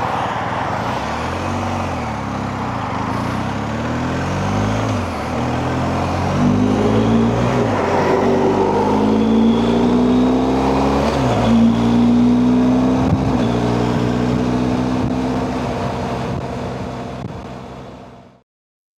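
BMW R 1250 GS boxer-twin motorcycle engine under way at road speed, its pitch rising and falling several times with throttle and gear changes, over a steady rush of wind. The sound fades out near the end.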